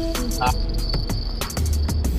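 Spinning reel's drag ticking in rapid, irregular clicks as a hooked fish pulls line off against the bent rod.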